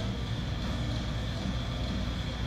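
A steady low rumble of room noise with no knocks or clanks.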